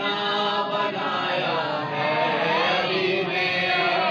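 A man's voice chanting devotional Urdu verse (a manqabat in praise of Ali) into a microphone, drawing out long held notes that bend slowly in pitch.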